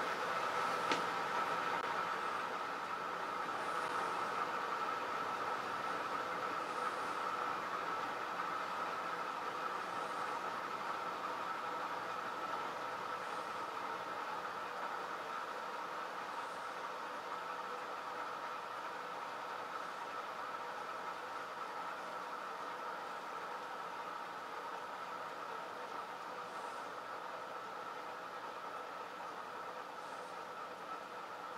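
A motor-driven 1.5 kg rotor spinning down from about 900 RPM after its power is reduced. Its steady mechanical whirr grows gradually quieter as it coasts. A single click comes about a second in.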